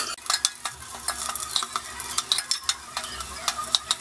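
Whole spices and green chilli sizzling in hot ghee in a stainless steel pressure cooker, with many small irregular crackles, while a metal ladle stirs and scrapes the bottom of the pot.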